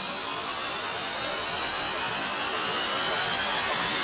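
An electronic riser in the soundtrack: a rushing noise sweep climbing steadily in pitch and loudness, with faint tones gliding upward above it.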